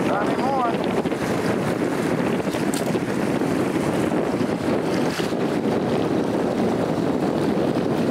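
Steady wind rushing over the microphone, with the sea's wash beneath it.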